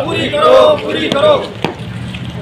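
A group of men chanting protest slogans together, their voices overlapping. There is one sharp click near the end.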